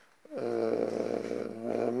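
A man's drawn-out hesitation sound, an even-pitched "uhh" held for about a second and a half, starting a moment in, mid-sentence.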